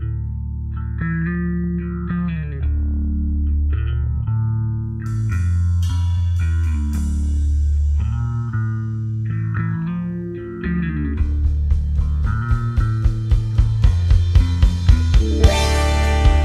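Intro of a stoner doom song: a slow, effects-laden electric guitar riff over sustained bass guitar notes. Bright ringing hits come in about five seconds in, and from about eleven seconds a steady beat enters and the music grows louder and fuller toward the end.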